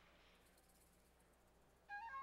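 Near silence: faint steady hum of the soundtrack. A soft held tone begins right at the end.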